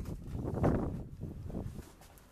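Irregular rushing noise of wind buffeting the microphone outdoors, swelling and fading.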